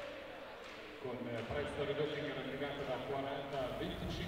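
Indistinct talking and chatter echoing in an indoor basketball arena, with no clear words.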